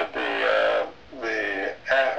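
A man's voice coming through a low-quality Skype connection, two drawn-out, unintelligible utterances.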